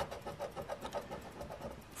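Black plastic scratcher coin scraping the coating off a scratch-off lottery ticket in rapid, even back-and-forth strokes.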